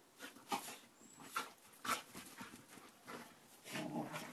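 A dog nosing about in a leafy shrub: irregular rustling of leaves and short sniffing noises, with a fuller, lower sound near the end.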